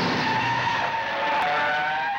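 Car tyres screeching in one long skid: a steady, loud squeal over hiss that slides slightly lower in pitch near the end.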